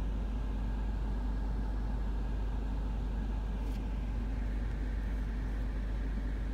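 Car interior noise: a steady low engine and road rumble heard from inside the cabin as the car creeps slowly forward.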